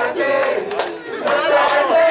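A group of voices singing and chanting a Swahili song together, loud and lively, with a short dip in the voices about a second in.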